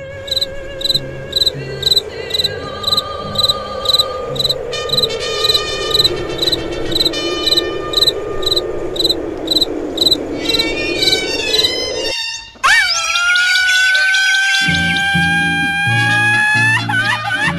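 A cricket chirping steadily, about two high chirps a second, over a faint night background. About twelve seconds in the chirping breaks off and a brass band strikes up loudly with held trumpet notes and a low beat.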